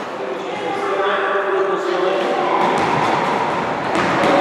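Several high children's voices talking and calling, echoing in a large sports hall, with no clear words.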